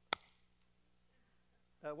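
A single sharp smack of a hand, struck once just after the start, miming being smacked.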